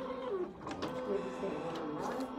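A small printer running steadily as it prints, with faint voices behind it.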